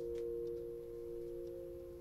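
Film score: a sustained chord of two or three steady low-mid tones, held and then fading away near the end.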